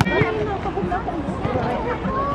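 People talking, with several voices at once.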